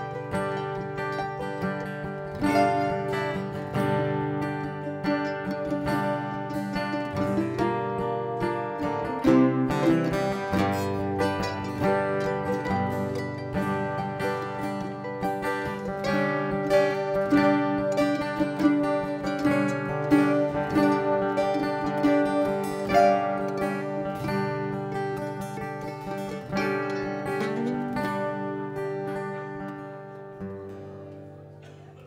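Live acoustic instrumental: two acoustic guitars and a mandolin picking together, getting quieter near the end.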